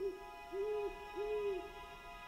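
Owl hoot sound effect: two drawn-out hoots over a faint held music chord.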